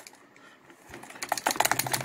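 Taurus G3 pistol rattling and clicking in a leather pancake holster as the holster is shaken upside down: a quick run of light clicks in the second half. The pistol stays held, a test of the holster's retention.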